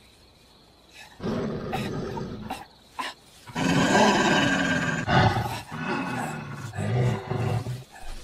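Loud, guttural roaring and growling cries in several bursts, starting after about a second of quiet.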